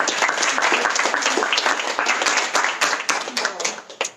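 Audience applauding with dense, irregular clapping that dies away just before the end.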